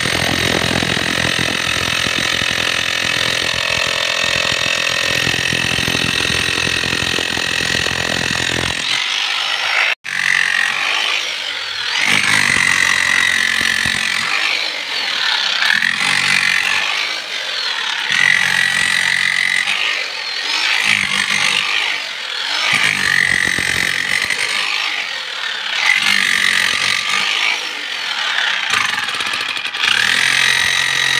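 Bosch GSH 11E electric demolition hammer running, first hammering without a break into masonry and concrete. After a cut about ten seconds in, it works in short bursts about every two and a half seconds as the chisel is driven into soil, a high motor whine rising and falling with each burst.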